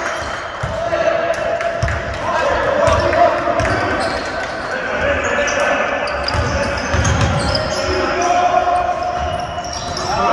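A basketball being bounced repeatedly on an indoor court during a game, heard as a run of short strikes in a large hall.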